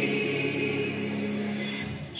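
Gospel song with choir singing, a note held steadily that breaks off near the end.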